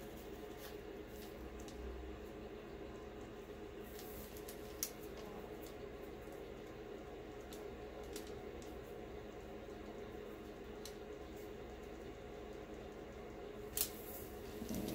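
Gloved fingertips rubbing and pressing loose glitter into wet glue on a mug to burnish it, giving faint scattered scratchy ticks, with two sharper clicks about five seconds in and near the end, over a steady low hum.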